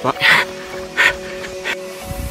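A man panting hard, out of breath from running up a long stretch of hills: about three heavy breaths, the loudest just after the start. Steady background music plays underneath.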